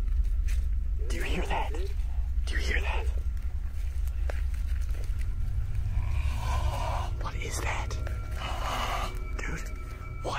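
Hushed whispering voices in a few short breathy bursts, over a steady low drone.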